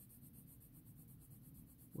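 Faint scratching of a coloured pencil shading on paper.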